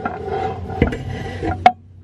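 Driveshaft slip yoke of a Fox-body Mustang being slid out of the T5 transmission's tailshaft housing: metal scraping and clinking, with a sharp clank near the end as it comes free.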